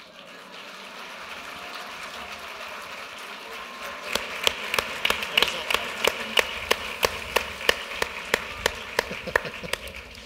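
Audience applauding. From about four seconds in, a few close, sharp hand claps stand out from the crowd at about three a second.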